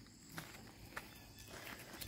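Faint footsteps on dry leaves and twigs over bare dirt, with a couple of soft crunches about half a second and a second in.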